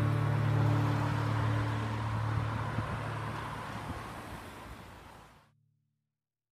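The last strummed acoustic guitar chord ringing on and fading away over a hiss, until the sound cuts off abruptly about five and a half seconds in.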